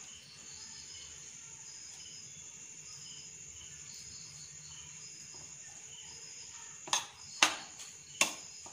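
Quiet kitchen room tone with faint, short high chirps repeating in the background. Near the end, two sharp clicks of a metal spoon knocking against a plastic mixing bowl as grated vegetables are stirred.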